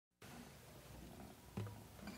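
Very quiet lead-in at the start of an indie-pop music track: a faint low hum and hiss, with one short, soft low note about one and a half seconds in.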